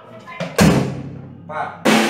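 Acoustic drum kit played in short strokes: two loud crashes of cymbal with bass drum about a second and a quarter apart, each ringing out, with a lighter hit just before the first.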